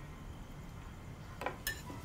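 Quiet dining room with two faint, short clinks of cutlery on dinner plates about a second and a half in.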